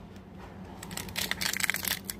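A foil Pokémon booster pack wrapper crinkling as it is picked up and handled. The crackling starts about a second in, over a faint steady low hum.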